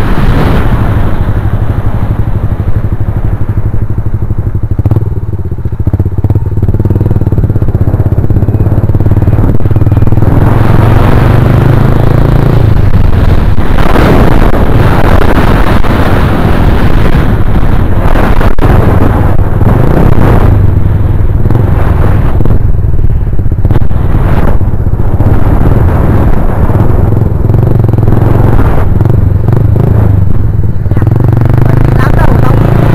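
Small single-cylinder motorcycle running at speed, its engine and the wind rush over the camera's microphone loud and steady, with a brief dip in loudness around five seconds in.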